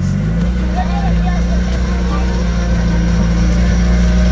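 Turbocharged B-series engine of a Honda Integra idling with a steady low note, no revving.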